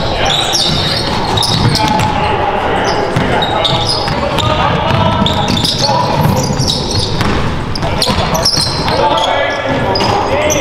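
Live basketball game sound in a large gym: a ball bouncing on the hardwood floor, sneakers squeaking and players' voices, all echoing in the hall.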